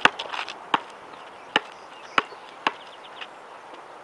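A basketball bouncing on a hard outdoor court: five sharp bounces about two-thirds of a second apart, the first the loudest and the rest growing fainter, dying away about three seconds in.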